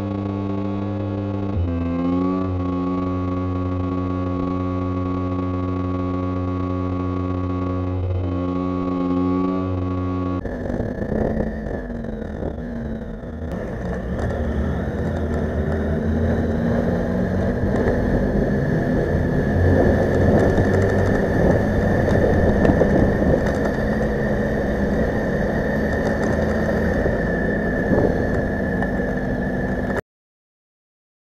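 Motorcycle engine and riding noise recorded by the bike's cameras. First a steady engine note at cruising speed, with slight pitch shifts. About ten seconds in, after a cut, it changes to a rougher engine note mixed with wind and road noise at town speed.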